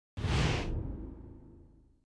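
A whoosh sound effect over a low rumble that starts suddenly and fades away over about a second and a half. It is the kind of sting laid over the closing logo of a news report.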